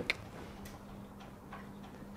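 Marker pen writing on a whiteboard: a few faint, irregular taps and scratches of the tip against the board, over a faint steady hum.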